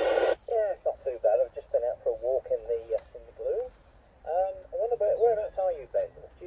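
A man's voice received over 2 m FM through the Yaesu FT-817 transceiver's speaker, thin and narrow-band: the other station replying. It opens with a short burst of hiss as the receiver's squelch opens.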